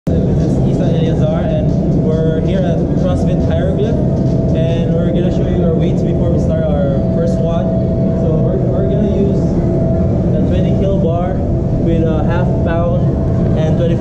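Voices talking over a loud, steady low rumble and a thin steady hum.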